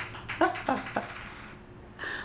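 A small light toy ball clattering and bouncing on a tile floor as a kitten bats it: a quick run of hard clicks with a high ringing, then a few softer knocks that die away about a second and a half in.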